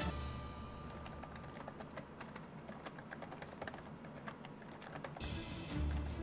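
Faint, rapid clicking of computer keyboard keys being typed. Background music with a low bass comes in about five seconds in.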